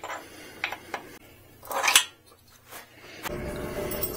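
Light metallic clicks and a louder rattle of a steel bolt and pliers being handled at the rear-shock pivot of a folding e-bike as the longer bolt is fitted through the hinge. A steady low rumble comes in near the end.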